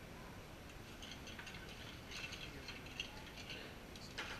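Light, irregular clinking and rattling of glassware and bar tools as a cocktail is made behind a bar, with one sharper clink about three seconds in.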